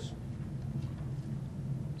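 A steady low hum of background ambience, with no speech.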